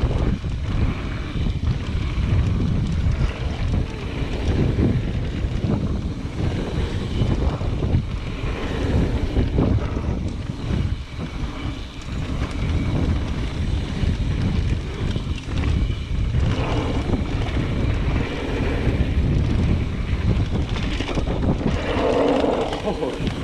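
Wind buffeting the microphone of a handlebar-mounted camera on a mountain bike riding fast down a dirt trail, over a steady low rumble of the tyres on dirt with frequent rattles and knocks from the bike over bumps.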